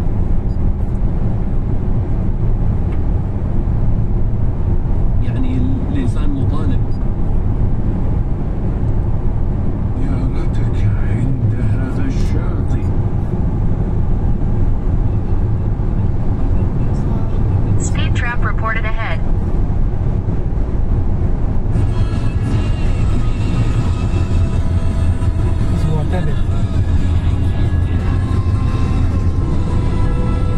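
Steady low rumble of road and engine noise inside a moving car on a highway, with brief voices now and then. Music comes in about two-thirds of the way through and carries on over the rumble.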